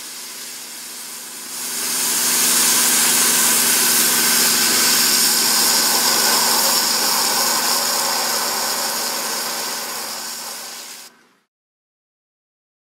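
A high-pressure water-and-abrasive cutting lance jetting against a metal sandwich panel: a loud steady hiss that builds up about a second and a half in, over a steady engine hum from the pump unit. The hiss eases slightly and then cuts off suddenly near the end.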